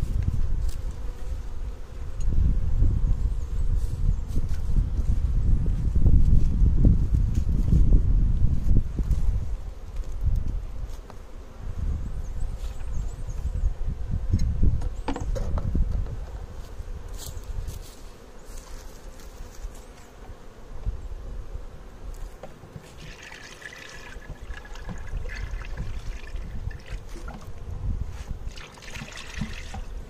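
Clear feed syrup poured from a plastic bucket into a wooden feeder box on a beehive, trickling and splashing in two spells near the end. A heavy low rumble on the microphone fills the first half.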